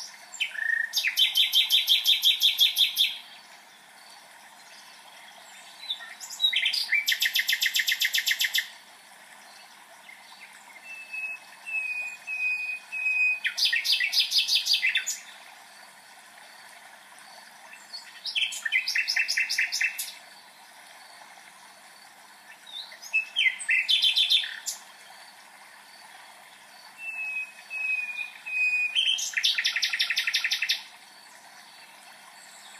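A songbird singing the same song over and over: a fast trill of evenly repeated notes lasting two to three seconds, six times, about every five seconds. Some songs open with a few short whistled notes.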